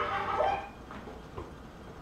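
A toddler's brief whiny vocal sound, held on one pitch for about half a second, then fading to quiet.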